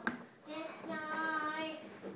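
A young child singing one long, steady note, after a short sharp click at the very start.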